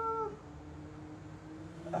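A man's drawn-out, high-pitched 'uhh', held on one note and fading out about a quarter of a second in. After it comes a faint, steady low hum.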